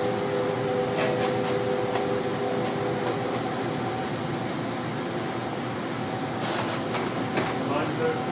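Steady machine hum with a few scattered faint clicks. A set of steady tones runs through the first half and fades about halfway.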